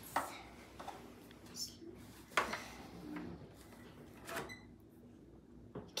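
Faint, irregular plastic clicks and knocks from a toy cash register as a toy card is worked through its card slot. The strongest come a little past two seconds and about four and a half seconds in.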